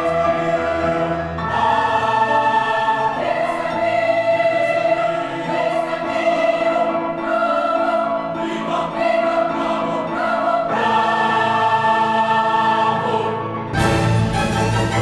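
A large choir of children and teenagers singing sustained chords, the harmony shifting every couple of seconds. Just before the end the sound changes abruptly.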